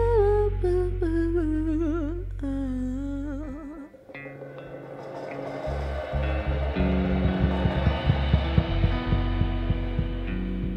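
Live band music: a sung vocal line with wide vibrato steps down in pitch over a held bass note, then breaks off about three and a half seconds in. Electric guitar, bass and drums then build back up, with a run of drum and cymbal hits over the last few seconds.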